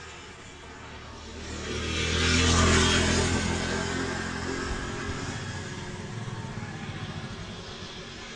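A motor vehicle on the road approaches and passes close by. Its engine and tyres grow loud to a peak about two and a half seconds in, then the sound slowly fades.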